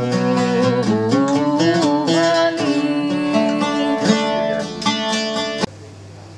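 An oud played with plucked notes, some of them sliding in pitch. The music cuts off suddenly near the end, leaving a steady low hum.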